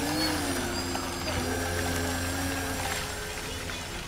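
An RC hydrofoil boat's motor running with a steady whine over a low hum, easing off about three seconds in.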